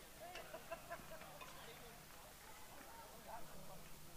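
Faint, indistinct voices of people talking in the distance, with a few light ticks in the first second.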